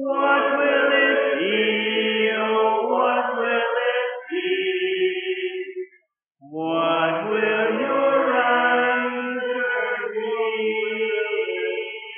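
Congregation singing a hymn a cappella, with long held notes. The singing breaks off briefly about halfway for a breath, then resumes, and the final note fades away at the end.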